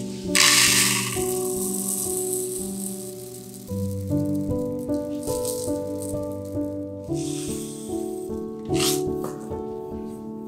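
Dry citric acid crystals shaken from a plastic bottle into a paper cup, rattling: one long pour right at the start, then shorter bursts later on. Soft piano music plays underneath.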